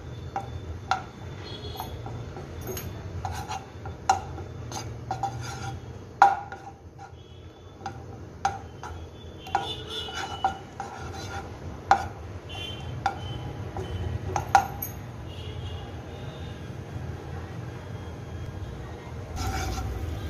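A spatula tapping and scraping against a non-stick kadhai while butter melts in it: irregular sharp clicks, some with a short ring, about one a second, over a low steady hum.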